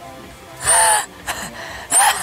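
A woman's short, breathy vocal exclamation whose pitch rises and falls, about two-thirds of a second in, with another brief one at the very end.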